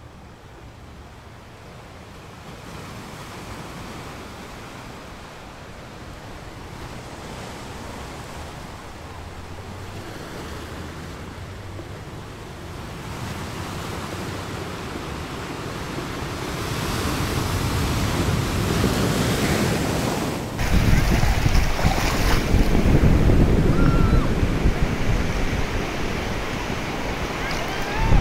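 Shallow sea water washing and lapping over a sandy beach, growing louder, with wind rumbling on the microphone. About twenty seconds in, the wind rumble suddenly jumps up and stays heavy.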